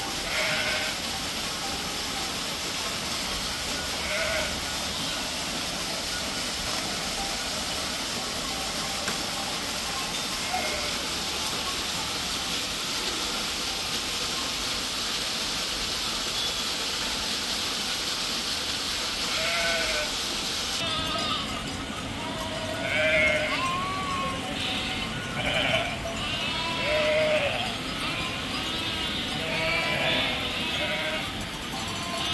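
Steady rush of a small waterfall spilling into a pool, with an occasional bleat from a flock of sheep and goats. About two-thirds of the way through the water noise drops away and the bleating becomes frequent, many short calls one after another.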